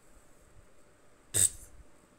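A single short, sharp click about two thirds of the way in, over quiet room tone.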